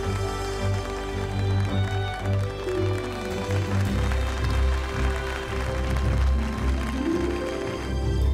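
Film score music with sustained tones over a steady, strong bass line.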